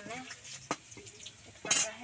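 Chillies frying in oil in a steel kadhai over a wood-fired clay stove and being stirred, with a steady sizzle. There is a sharp tap about a third of the way in and a short, louder rush of sound near the end.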